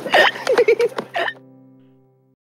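Laughter in quick short bursts over background music; the laughter stops about a second and a half in and the music ends on a held chord that fades away.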